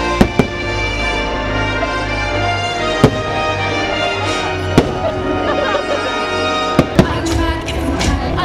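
Aerial firework shells bursting with sharp bangs over loud show music: a quick pair right at the start, a single bang about three seconds in (the loudest), another near five seconds, and a quick pair near the end.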